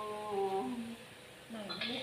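A woman's singing voice holding one long, steady note that steps down slightly in pitch about half a second in and ends before the one-second mark; after a short pause the singing starts again near the end.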